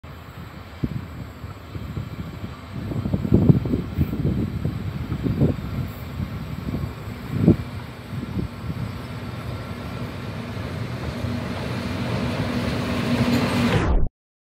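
Renfe class 251 electric locomotive approaching with a freight train, its low rumble growing steadily louder as it nears. A steady hum joins in near the end. A few irregular low thumps sound in the first half.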